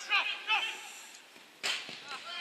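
Brief shouts from players, then a single sharp smack about one and a half seconds in, a football being struck on the pitch.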